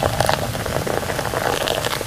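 Sparkling wine poured into a glass flute and fizzing: a dense, steady crackle of bursting bubbles.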